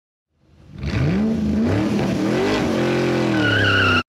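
A revving engine, fading in over the first second, its pitch climbing and dipping, with a high squeal joining near the end before the sound cuts off abruptly.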